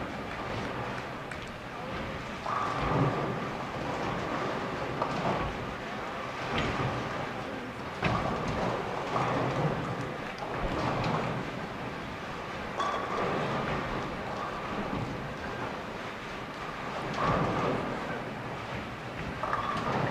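Bowling alley din: balls rolling down the lanes and pins crashing on neighbouring lanes, with a murmur of voices behind it.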